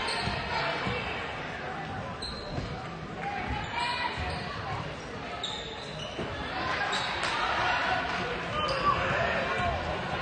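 A basketball dribbling on a hardwood gym floor, with sneakers squeaking briefly several times, over spectators' indistinct chatter echoing in the gym.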